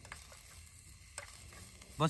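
Faint stirring of a spoon in a small metal pot on a portable gas stove, with a light clink about a second in.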